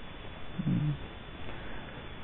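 Pause in a recorded talk: steady faint hiss, with one short, low murmur from a person about half a second in.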